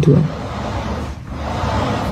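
Steady noisy hum in the soundtrack of a phone video being played back, with a short faint voice-like sound right at the start that the listeners take for a hidden voice or someone's breathing.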